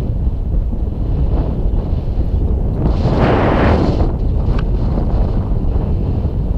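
Airflow buffeting an action camera's microphone in tandem paraglider flight: a steady low wind rumble, with a louder rush about halfway through that lasts about a second.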